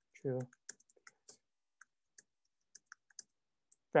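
Typing on a computer keyboard: an uneven run of light, separate key clicks, about a dozen over three seconds, as a line of text is typed.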